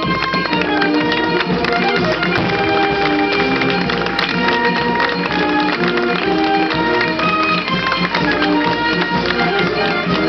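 A town wind band playing a slow melody in long held notes, loud and steady throughout.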